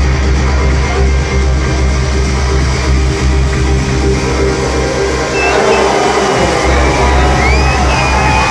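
Loud electronic dance music from a live DJ set over a club sound system, with a heavy bass beat. The bass drops out briefly a little after six seconds, then comes back.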